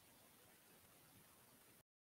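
Near silence: a faint steady hiss that drops out to dead silence near the end.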